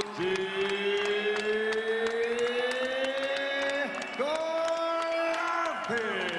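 A voice or music holds long drawn-out notes over arena crowd noise. The first note rises slowly for more than three seconds, and a second held note starts a little after four seconds in.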